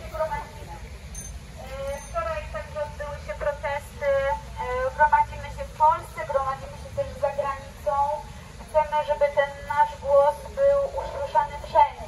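A woman speaking through a megaphone in a continuous stretch of address, her voice narrow and squeezed into the middle range.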